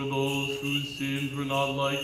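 Men's voices chanting the Orthodox burial service in unison: a slow line of held notes, each lasting about half a second to a second before the pitch moves on.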